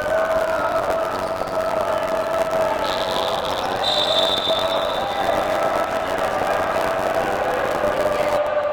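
Indoor arena crowd chanting and cheering throughout. A referee's whistle blows about three seconds in, in two blasts, the second held for over a second, calling a foul.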